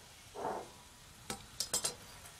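A few light, sharp clinks in the second half as kitchen items are handled at a glass mixing bowl, over bacon faintly sizzling in a frying pan.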